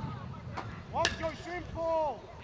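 Short shouted calls from players across a soccer field, with one sharp knock about a second in.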